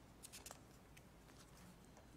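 Near silence: room tone with a few faint quick clicks and rustles in the first half-second.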